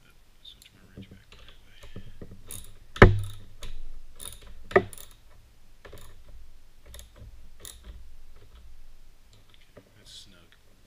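Hand ratchet clicking in short runs and metal parts clinking as the nut holding the steering damper bracket is tightened, with a sharper knock about three seconds in and another near five seconds.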